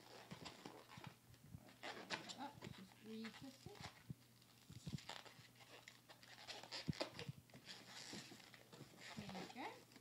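Inflated latex twisting balloon being squeezed and twisted by hand: irregular squeaks and rubbing crackles of rubber on rubber as the bubbles are wound together.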